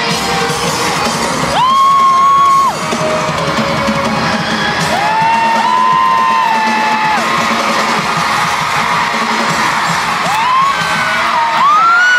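Live pop music from the audience of an arena concert: the band playing with long held vocal notes, each sliding up and then holding, three times, over a crowd cheering and screaming.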